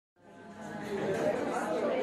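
Murmur of many people talking at once in a room, fading in over the first half second.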